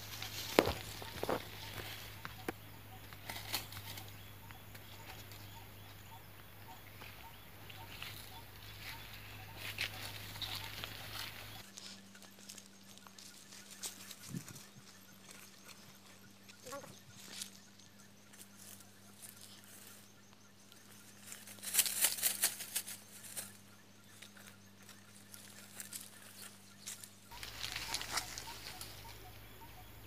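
Footsteps on dry grass and the rustle of leafy brush being pushed aside, in short scattered bursts with quieter stretches between; the loudest rustling comes about two-thirds of the way through.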